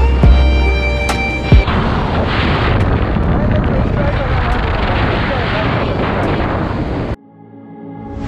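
Background music for about a second and a half, then a loud, steady roar of wind noise on the microphone of a moving motorcycle. It cuts off suddenly about a second before the end.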